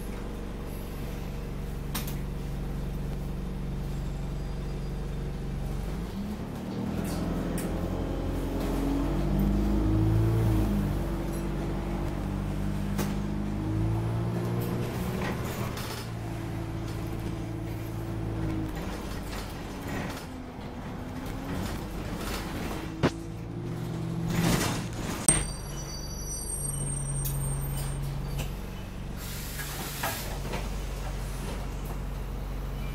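Alexander Dennis Enviro 200 single-deck bus heard from inside the saloon: the diesel engine idles, then about six seconds in revs up as the bus pulls away, its pitch climbing and stepping back through automatic gear changes before it settles to steady running. Near the end the bus stops with a hiss and a couple of sharp knocks, followed by a short run of high beeps.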